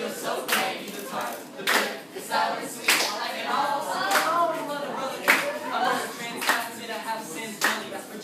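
Audience clapping along in a steady rhythm, about one sharp clap every 1.2 seconds, with voices singing along loudest in the middle.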